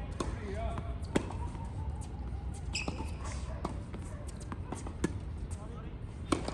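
Tennis ball knocks on a hard court: several sharp, scattered impacts of ball on racket and court, the loudest about a second in and another about five seconds in.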